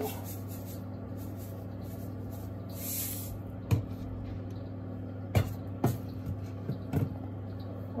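Salt poured from a container into a pan of cream sauce, a short hiss about three seconds in, followed by a few light knocks. A steady low hum runs underneath.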